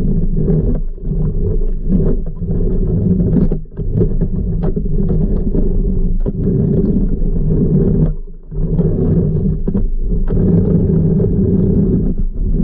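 Manual pool vacuum head drawn over a pebble pool floor under water, heard as a steady low rumble of water and suction with faint ticks, dipping briefly a few times as the strokes change.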